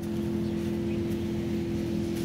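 A steady background drone of an engine or motor running, holding two even tones with no change in level.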